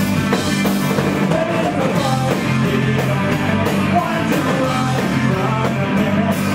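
Live rock band playing loud: electric guitars and a drum kit with regular cymbal hits, and a voice singing over it from about a second in.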